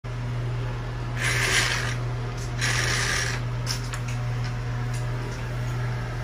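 Two brief rustles, as of bedding or fabric being moved, about a second and two and a half seconds in, with a few faint clicks, over a steady low hum.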